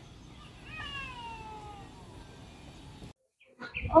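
Faint outdoor background noise, with one drawn-out animal call about a second in that falls slowly in pitch for about a second and a half. Near the end the sound cuts out briefly, and a woman starts speaking.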